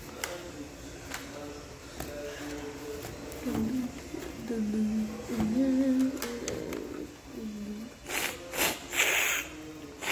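Handling noise from fitting an Instax Mini 9 instant camera into its carrying case: a few light clicks, then loud rustling and scraping bursts near the end. In the middle a low voice-like sound rises and falls in pitch.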